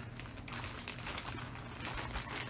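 Faint, irregular rustling and small clicks of objects being handled, over a low steady hum.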